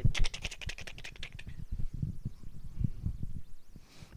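A fast run of sharp clicks for about a second and a half, then scattered soft low thumps and rustles of a handheld microphone being moved in the hand.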